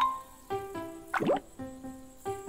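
Cartoon water-drop plop sound effect, a quick swoop in pitch about a second in, over light background music of spaced notes.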